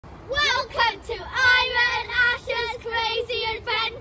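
A child singing a short sung phrase: a few quick syllables, then a run of notes held on much the same pitch.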